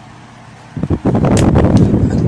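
Loud rumbling, rustling handling noise on a phone's microphone, starting suddenly about three-quarters of a second in as the handheld phone is swung around and brushes against the body and clothing.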